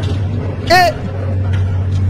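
Steady low drone of a vehicle's engine, with one short vocal exclamation a little under a second in.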